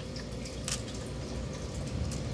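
Small pieces of broken gold jewelry clinking faintly as they are set onto the metal pan of a digital pocket scale, with one sharper click just under a second in.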